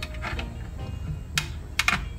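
Hands handling a wire and plastic trim at a rearview mirror mount: a few sharp plastic clicks and rattles, the loudest about a second and a half in and just before two seconds, over faint background music.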